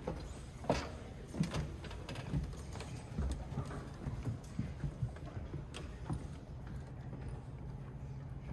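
Footsteps on a wooden stage floor, with scattered irregular knocks and rustles from a seated band settling before playing, over a low steady room hum.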